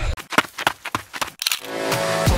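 Edited intro sound effects: a quick, irregular run of sharp clicks and hits, then a rising swell near the end that leads into electronic drum-and-bass music.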